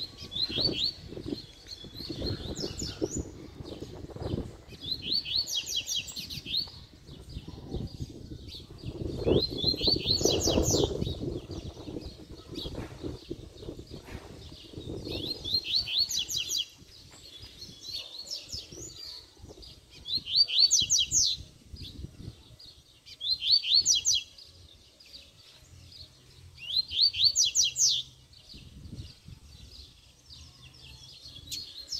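Male coleiro (double-collared seedeater) singing short, fast song phrases, about eight of them a few seconds apart, challenging a rival male. A low rumbling noise runs beneath the first half.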